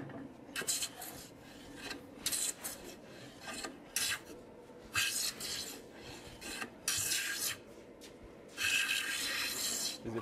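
Hand plane shaving the edge of a hard curly pecan slab: a run of short hissing strokes, with one longer stroke near the end.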